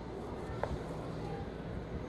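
Quiet sound of a long slicing knife drawn through smoked beef brisket on a cutting board, with a single faint click a little over half a second in.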